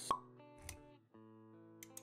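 Intro sound effects over soft background music with held notes: a sharp pop just after the start, then a short swish with a low thump a little over half a second later.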